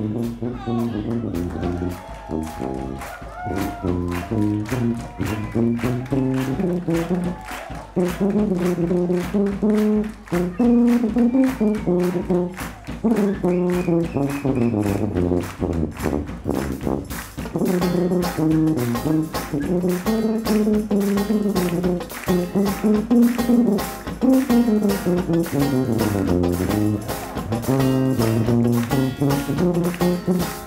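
New Orleans-style jazz band playing live: a sousaphone carries a bass line that steps up and down, under a steady drum-kit beat.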